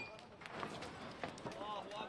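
Faint background sound with scattered light clicks, and a faint distant voice about one and a half seconds in.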